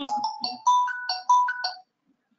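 A short electronic jingle of about eight quick notes that jump up and down in pitch, lasting under two seconds.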